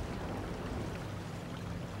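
Faint, steady background ambience: an even hiss with a low, steady hum underneath, and no distinct events.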